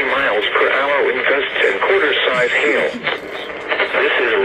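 Speech from a radio's speaker: an Emergency Alert System severe thunderstorm warning read out over a Uniden BC370CRS scanner tuned to FM, listing the expected hazards, with a short pause near the end.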